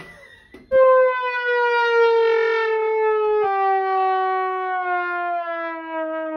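Trombone playing one long, loud note that slides slowly downward, a cartoon-style slide sound effect, starting about a second in and dropping a little more sharply near the middle.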